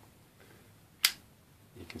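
A single sharp click about a second in: the blade of a Boker Plus Exskelibur front-flipper folding knife swinging open on its ball-bearing pivot and snapping into its liner lock.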